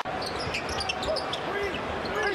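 Live basketball game sound from the court: a basketball bouncing on the hardwood, with short squeaky chirps and a steady arena noise bed. There is a brief dropout right at the start.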